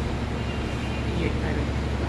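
A steady low hum runs under faint background voices.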